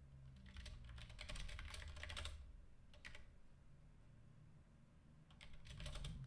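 Faint computer keyboard typing: a run of quick key clicks for the first two seconds or so, a short burst about three seconds in, and more clicks near the end.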